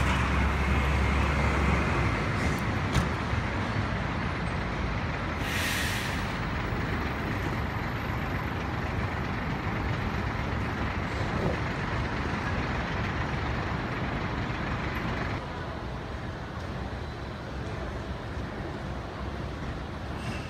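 Downtown street traffic with a heavy vehicle running close by: a deep rumble at the start, and a short air-brake hiss about five and a half seconds in. The traffic noise drops a little a few seconds before the end.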